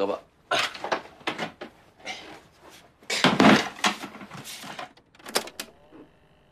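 Rustling and handling noises as a recording device is picked up and set down, loudest a little past the middle, then a few sharp clicks near the end as its record button is pressed.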